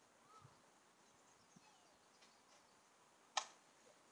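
Near silence, with a few faint high chirps and one sharp click about three and a half seconds in.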